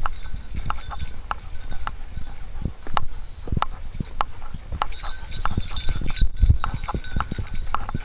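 Footsteps of a walker and dogs on a forest trail: a run of irregular knocks and clicks, at first on the planks of a wooden boardwalk.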